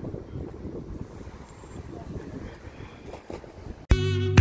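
Wind buffeting the microphone: an uneven low rumble with no clear event in it. Near the end, loud music with a steady beat cuts in suddenly.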